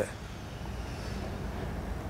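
Faint, steady low rumble of background noise in a pause in speech.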